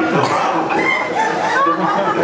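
A film-festival audience laughing and chattering, many voices overlapping, with cackling laughs among them.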